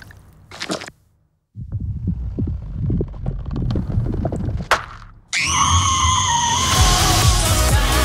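Trailer soundtrack: a moment of silence, then a low rumble with scattered thuds and a sharp crack, before loud electronic music comes in suddenly about five seconds in.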